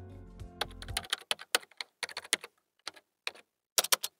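Computer keyboard typing sound effect: a run of irregular keystroke clicks. Background music fades out about a second in.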